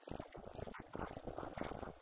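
A man's voice speaking into a handheld microphone and coming through a small PA amplifier, with a rough, buzzy quality.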